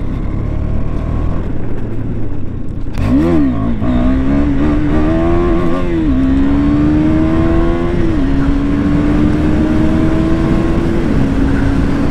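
KTM 250 Duke's single-cylinder engine running low and rough at first, then pulling hard through the gears: its note climbs steadily and drops back at each of three upshifts.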